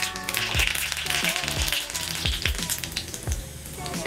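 Cumin seeds sizzling and crackling in hot vegetable oil in a small tadka pan, the sizzle easing a little near the end. Background music with a steady beat plays under it.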